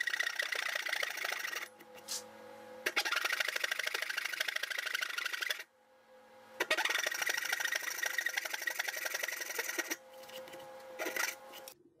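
A dovetail saw, a fine-toothed back saw, cutting into a wooden board with quick short strokes. There are four spells of sawing, the last one brief, with short pauses between them.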